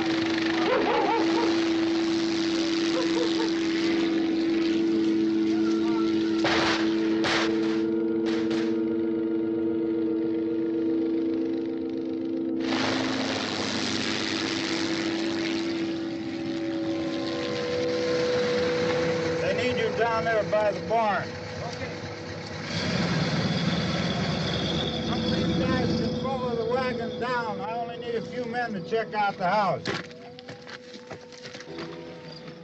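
Film soundtrack mix: long held notes from the score, then a car engine approaching from about 13 seconds in, with men's voices calling out near the end.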